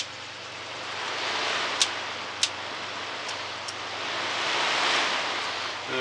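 Galaxy box fan running: a rushing of air that swells, eases and swells again as its speed is switched, with two sharp clicks from the replacement switch about two seconds in. The new switch gives only two speeds, high and low.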